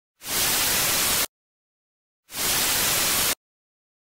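Television static hiss used as a sound effect: two bursts about a second long each, each fading in quickly and cutting off suddenly, with silence between them.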